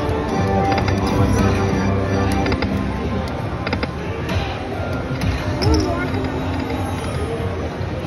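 Aristocrat Lightning Link High Stakes slot machine's electronic tones and short melodic notes as the reels spin, with scattered clicks and a few chirping pitch glides.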